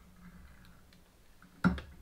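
Faint steady low hum, then a single sharp knock about a second and a half in, as the metal whip finish tool is put down on the fly-tying bench.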